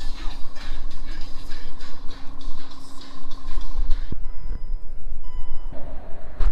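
Diesel fuel dispenser running with a steady hum while fuel is pumped, stopping with a click about four seconds in. A few short electronic beeps follow.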